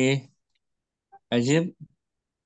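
A person's voice speaking two short utterances, one at the start and one about a second and a half in, with near silence between them.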